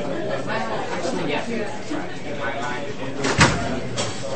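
Indistinct voices talking, with a single sharp thump about three and a half seconds in.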